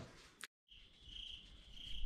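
Crickets chirping faintly, a steady high trill that starts about half a second in.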